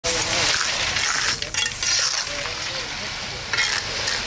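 Wet concrete pouring from a concrete pump hose into a block wall's hollow cells: a steady hiss and splatter of slurry, with a couple of sharper splats.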